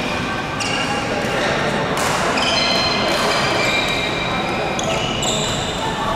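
Sneakers squeaking over and over on a badminton court's synthetic floor, many short high squeaks overlapping, with sharp racket strikes on the shuttlecock.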